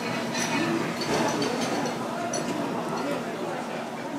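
Restaurant dining-room background: a murmur of other diners' chatter with a few light clinks of tableware.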